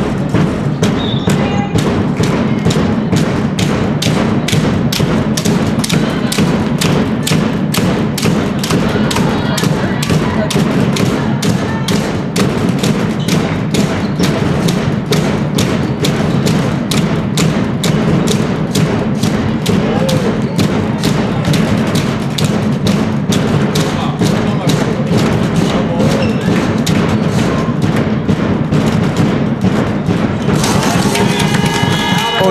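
A fast, steady beat of drum thuds over a constant hubbub of voices, like supporters drumming in a sports hall.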